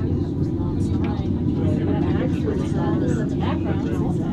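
Steady low hum of an aerial tramway cabin in motion, with passengers' voices talking indistinctly over it.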